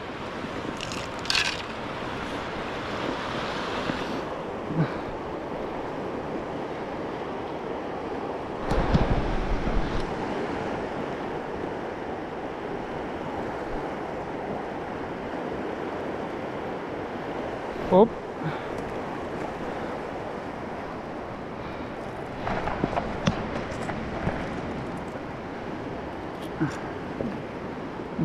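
Steady rushing of a fast mountain river over rocks, with a brief low rumble on the microphone about nine seconds in.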